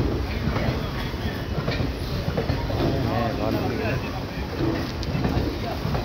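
Passenger train coaches running along the track beside the platform, a steady rumble, with people's voices mixed in.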